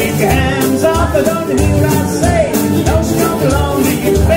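Live jug band music: acoustic guitar and mandolin strumming over a bass on a steady thumping beat, with washboard scraping and a blown jug. Voices sing sliding melody lines over it.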